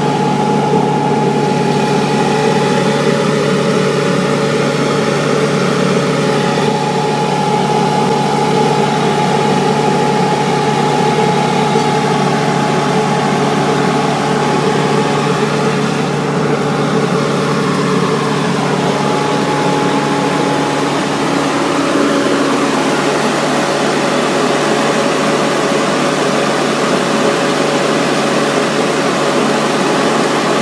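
Mining plant machinery running steadily: an unbroken engine-like drone with a constant low hum and a higher steady whine.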